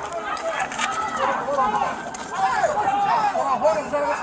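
Several voices shouting over one another at a distance from the microphone, with a few light clicks and clatters.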